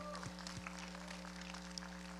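Faint, scattered response from a church congregation, a few light claps and murmurs, over a steady low hum.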